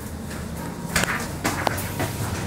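Mitsubishi elevator's sliding doors opening on arrival at the floor, with two sharp knocks from the door mechanism about a second and a second and a half in, over the car's steady low hum.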